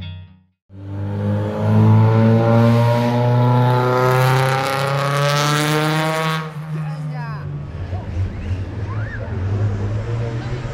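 Rally car engine accelerating hard, its pitch climbing steadily for about five seconds before it drops away. Crowd chatter follows.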